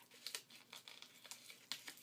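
Faint crinkling and small crackles of bubble wrap and brown paper being handled and pressed down with tape.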